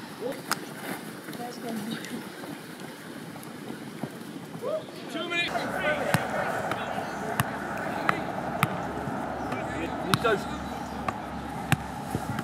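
Footballs being kicked and caught in goalkeeper training: from about halfway through, sharp single thuds come roughly once a second over a steady low hum. Before that there is only open-air training ambience with faint chatter of players.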